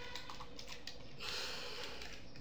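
A few quick keystrokes on a computer keyboard while code is edited, then a short hiss about halfway through.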